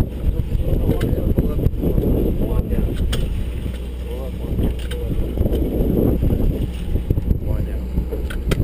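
Sportfishing boat's engine running with a steady low rumble under wind and sea wash, with faint voices of people on deck.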